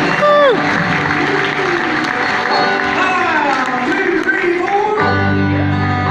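Audience applauding and cheering in a large hall at the end of a bluegrass number, with a loud falling "whoo" near the start. About five seconds in, the band starts the next tune on upright bass and plucked strings.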